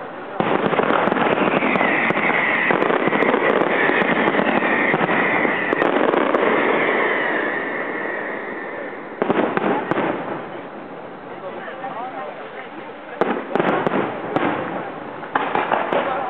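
Aerial fireworks display: a dense, continuous crackling barrage for the first nine seconds or so, then separate sudden bangs about 9, 13 and 15 seconds in.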